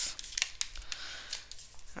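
Cards being handled and drawn from a deck: scattered light clicks and rustles.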